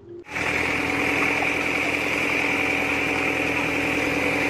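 A small engine running steadily at an even, unchanging level, starting about a quarter of a second in.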